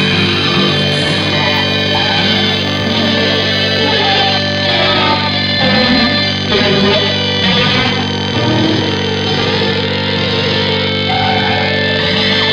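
Lo-fi psychedelic rock led by guitars, an instrumental stretch with no singing, playing steadily at full level.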